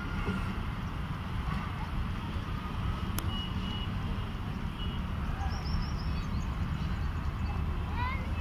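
Steady low rumble of a distant WDP4D diesel locomotive, an EMD two-stroke, moving slowly while hauling its train. A few faint bird chirps come in around the middle, and there is one sharp click about three seconds in.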